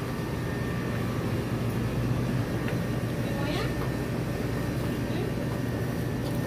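Steady low hum of a small shop's ambience, with faint voices in the background.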